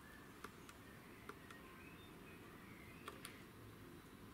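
Near silence broken by faint clicks from the compass display's keypad buttons being pressed and released. The clicks come in three close pairs.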